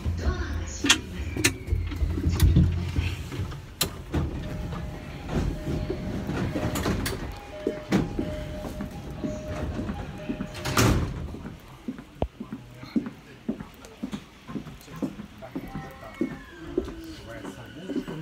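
Inside a moving commuter train carriage: the train's rumble and rattle, with knocks and rubbing from a handheld phone. Midway comes a short beeping tone repeated for several seconds, and a loud knock follows about eleven seconds in.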